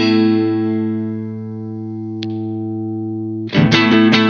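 Semi-hollow electric guitar (Vola Vasti KJM J2) played clean through a Hughes & Kettner Black Spirit 200 amp into a 2x12 cab, on the middle-and-neck humbucker setting. A chord rings and slowly fades, there is a short click about two seconds in, and near the end quick picked notes start up on the neck pickup.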